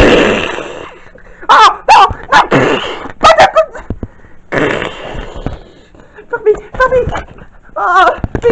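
Close rubbing and rustling against the microphone as a hand covers it, broken by several short, high, wavering voice-like sounds.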